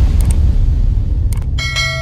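Subscribe-animation sound effects: a few short clicks, then a bright bell chime that starts about one and a half seconds in and rings on, over a steady low rumble.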